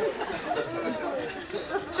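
Audience chatter after a joke: several voices talking over one another at once. Near the end a woman's voice comes in clearly with "So".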